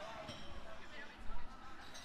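Faint, indistinct voices and murmur in a large hall, with a brief louder sound just over a second in.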